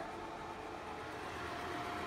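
Bell & Howell 456a 8mm film projector running, its motor and cooling fan making a steady whir with a thin, even hum.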